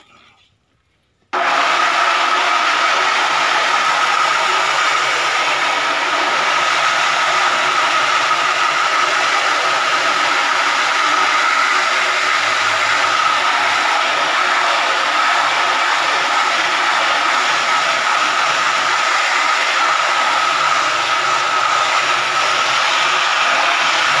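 A hose spray nozzle jets water onto a screen-printing screen to wash out the exposed emulsion. It makes a loud, steady spray with a constant whine, starting abruptly about a second in.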